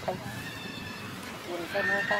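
Voices in the background, quieter at first and picking up about a second and a half in, with a steady high-pitched tone starting near the end.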